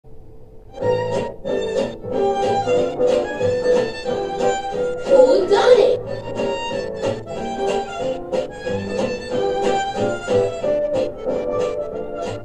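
Upbeat children's TV title-card music played through a television: a rhythmic tune of short, evenly paced notes that starts about a second in, with a brief noisy swoosh about halfway through.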